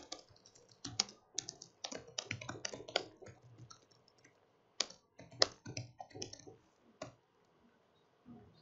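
Typing on a laptop keyboard: quick runs of key clicks, a pause of about a second midway, then more keystrokes.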